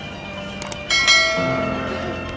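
Subscribe-button animation sound effect: two quick clicks, then a bright bell ding just under a second in that rings on and fades.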